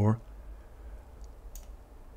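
A couple of faint, quick computer mouse clicks a little past a second in, over quiet room tone.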